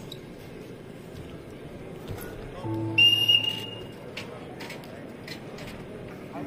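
A referee's whistle blown once, about three seconds in, for about half a second, stopping the wrestling bout. The steady hum of an arena crowd runs beneath it.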